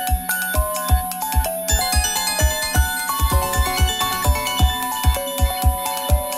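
Live electronic music: a synthesizer playing a quick run of short notes over a held low drone and a steady bass-drum beat of about three thumps a second.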